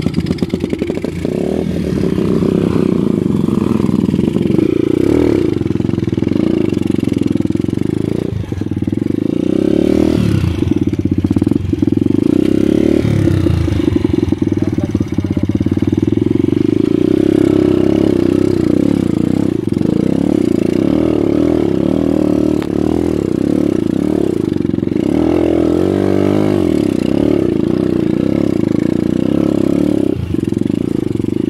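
Dirt bike engine running under load on a trail ride, the revs rising and falling with the throttle and easing off briefly a few times.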